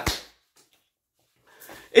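A pause in a man's speech: his last word ends with a short low thump, then near silence, and a faint breath just before he speaks again.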